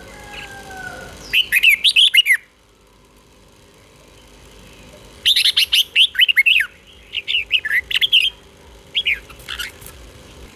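Red-whiskered bulbul singing in the doubled-phrase 'beun' style: short bursts of quick, sweeping whistled notes. The first burst comes about a second and a half in, and a longer run of repeated phrases follows from about five seconds in. A faint, softer gliding note is heard at the very start.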